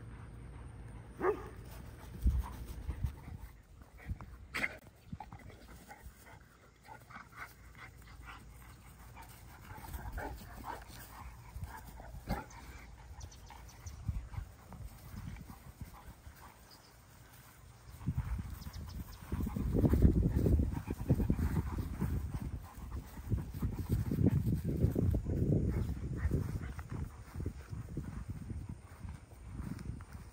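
Boerboel mastiffs sniffing and snuffling close by, with short scattered noises through the first half. From about two-thirds in a louder, uneven low rumble takes over.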